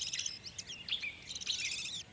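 Budgerigars chattering: clusters of rapid, high chirps with short gaps between them.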